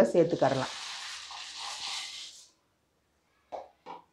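Dry fusilli pasta tipped into a pan of boiling water, which hisses for about two seconds before stopping.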